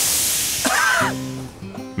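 A sudden blast of steam hissing from a steam locomotive, fading away over about a second and a half. Music with held notes comes in about a second in.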